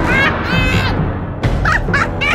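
A witch's high, cackling laugh, a string of quick warbling cackles, over background music with steady low tones.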